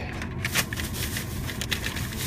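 Plastic snack bags crinkling and rustling as they are handled: a run of irregular crackles over a low steady rumble.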